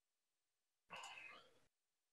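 Near silence, with one faint, short breathy sound about a second in.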